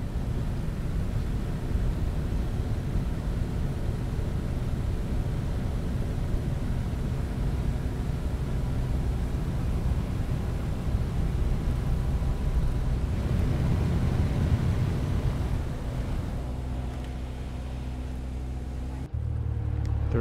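Twin-engine propeller plane on landing approach: a steady engine drone with a deep rumble. The sound breaks off abruptly near the end.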